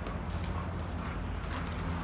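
Two dogs play-wrestling on packed dirt: scuffling paws and light knocks over a low steady rumble.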